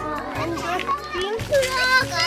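Several children's voices chattering and calling out at once, over background music.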